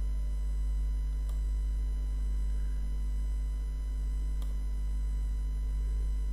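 Steady low electrical hum with fainter steady tones above it: mains hum picked up by the recording setup. Two faint clicks come about a second in and about four and a half seconds in.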